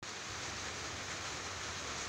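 Steady, even hiss of outdoor background noise picked up by the recording, cutting in suddenly from silence, with no distinct event in it.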